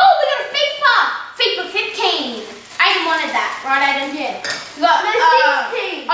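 High-pitched children's voices exclaiming and chattering without clear words, with light clinking and crinkling of handled packaging underneath.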